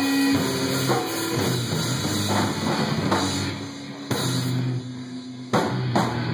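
Live band playing, drum kit hits about once a second over held low notes. The song is in its closing bars, thinning out after about four seconds with a last strong hit near the end.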